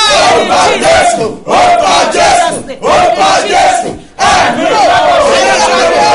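A man and a woman shouting together in fervent prayer, in loud phrases broken by short gaps for breath, the last one a long drawn-out cry that slowly falls in pitch.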